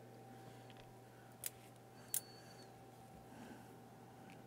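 Two small, sharp metallic clicks about two-thirds of a second apart, the second with a brief high ring, from a hex key and knob being worked on the front panel of a Tektronix 7A29 plug-in. A faint steady hum runs underneath.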